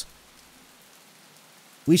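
Faint, steady rain falling, an even background hiss.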